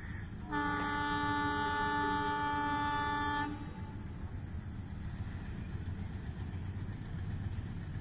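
Locomotive air horn sounding one long, steady multi-tone blast of about three seconds, starting about half a second in, over a steady low rumble.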